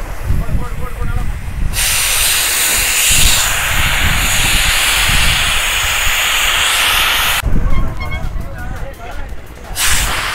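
Compressed air hissing loudly and steadily at a boat-launching airbag, starting suddenly about two seconds in and cutting off suddenly after about five and a half seconds, then starting again near the end. Men's voices can be heard around it.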